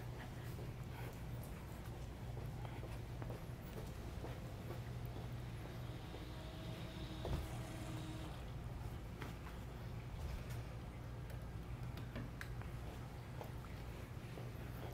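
Quiet room tone: a faint, steady low hum with a few light clicks.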